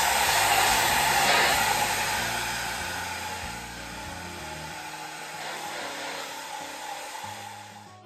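Handheld hair dryer blowing on a water-sprayed cotton T-shirt to dry the bled ink lines: a steady rushing hiss that grows fainter after about two seconds. Background music plays under it.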